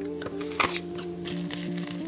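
Plastic mailer bag crinkling as it is handled, with a sharp crackle about half a second in, over soft background music with long held notes.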